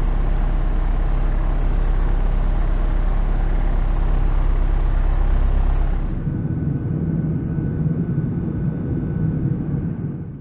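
Cockpit noise of a Beta Technologies Alia electric aircraft in flight: a steady, loud, deep drone with rushing air. About six seconds in it changes abruptly to a lighter hum with less hiss.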